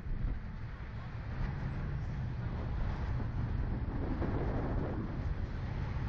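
Wind buffeting the microphone of a camera mounted on a slingshot ride, a steady low rumble.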